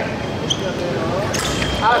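Épée fencers' footwork thudding on the piste as the bout gets under way, with a sharp clink about one and a half seconds in. A man's voice says a word near the end.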